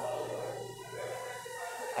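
Faint, steady background hubbub of a busy indoor market hall, with no distinct sound standing out.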